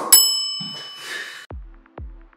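A single bell ding after a short click, ringing out and fading over about a second and a half, marking the start of a five-minute workout timer. Electronic dance music with a steady kick drum, about two beats a second, comes in near the end.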